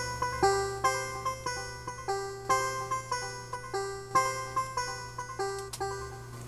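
A plucked-sounding melody line from an R&B beat played back in a music production program: separate pitched notes, each struck sharply and fading, about two to three a second in a repeating figure.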